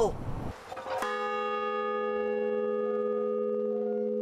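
A large bronze bell hung in a frame, struck once about a second in and left to ring, its hum and higher tones holding steady.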